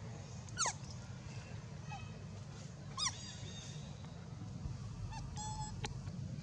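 Two short, sharp animal calls, one falling quickly in pitch about half a second in and one brief arched call about three seconds in, over a steady low hum. Near the end comes a short, held whistle-like note.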